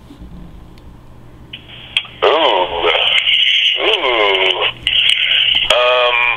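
A voice heard over a telephone line, thin and narrow, with a steady line hiss that comes in about a second and a half in.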